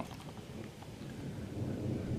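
Distant thunder: a low rumble that slowly builds in loudness.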